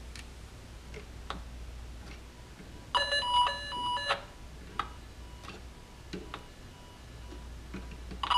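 Greenlee 200EP-G tone probe sounding the tracing tone it picks up from the cable: a warbling electronic tone that jumps quickly between pitches. It grows loud for about a second, about three seconds in, as the probe tip reaches the patch-panel port where the traced cable terminates, then carries on faintly. A few small handling clicks come before and after it.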